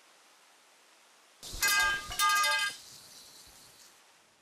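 Two short, bright chime-like musical tones in quick succession, starting about one and a half seconds in, with a ringing tail that fades over the next second or two.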